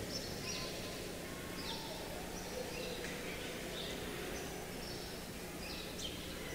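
Faint room noise with a steady low hum and short, high chirps repeating about once a second, like small birds calling.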